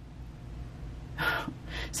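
A woman drawing a short, audible breath about a second in, a brief gasp-like intake just before she speaks again.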